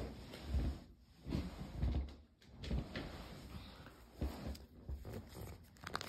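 A deck of tarot cards being picked up and handled: irregular rustling and card clicks with soft knocks and bumps against the surface.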